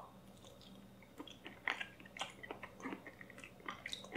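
A person chewing a mouthful of raw ground-beef meatball mix: faint, irregular wet mouth clicks and smacks that begin about a second in.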